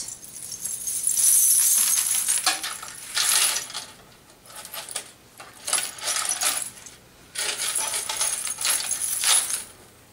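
Metal coins and sequins on a belly-dance coin scarf jingling and chinking as the scarf is gathered and shifted by hand, in three spells with short lulls between.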